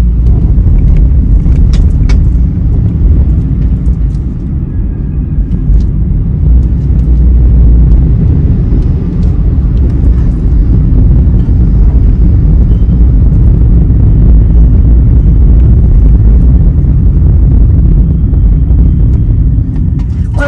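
Car being driven, heard from inside the cabin: a steady low rumble of engine and road noise.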